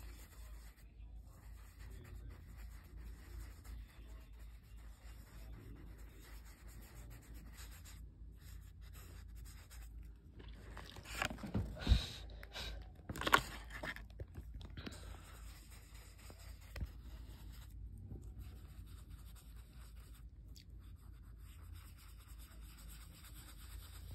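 Faint scratching and rubbing of a pencil on sketch paper, with a cluster of loud knocks and rustles about halfway through.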